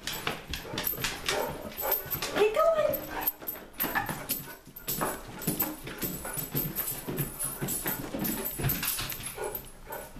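Basset hound making a few short, arching whining calls while footsteps and knocks clatter on the wooden stairs.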